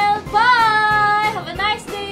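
A high voice singing long held notes: one note swells up in pitch and settles, then a short quick phrase comes near the end.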